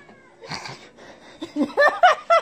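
Domestic cat meowing: several short rising-and-falling meows in quick succession, starting about a second and a half in and growing louder.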